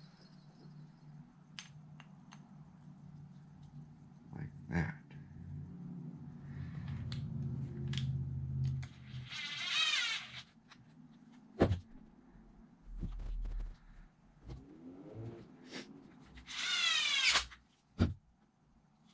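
Cordless electric screwdriver running in two short bursts, each a rising motor whine, driving screws into an RC car transmission case. Small clicks and knocks of plastic parts and screws being handled come between the bursts.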